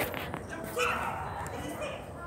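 A small dog barking, with people talking in the background.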